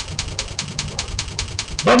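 Rapid, evenly spaced clicking, about seven clicks a second, over a low hum. A man's voice begins near the end.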